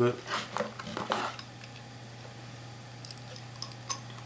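A handful of hard clicks and knocks, hermit crab shells clacking against each other and the cardboard box as they are handled, mostly in the first second or so, with a few fainter ticks later and one near the end. A steady low hum runs underneath.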